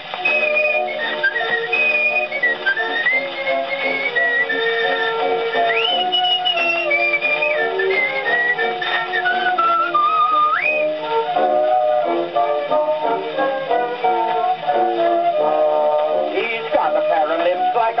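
An old music hall record played on a horn gramophone: a man whistles the melody over a band accompaniment for the first ten seconds or so, then the accompaniment plays on alone. The sound is thin and cut off in the treble, typical of an early acoustic recording.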